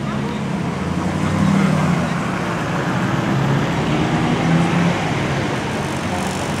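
Classic car engines running as old cars drive slowly past, one after another. The low engine note swells about a second and a half in, then stays steady.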